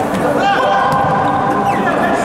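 Futsal players shouting on an indoor court, one long held call starting about half a second in, over short knocks of the ball being played on the hard floor of a large sports hall.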